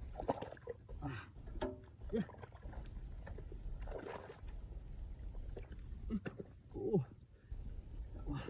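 Hands digging and squelching in a muddy, water-filled hole in wet ground while feeling for fish, with several short murmured vocal sounds from the digger.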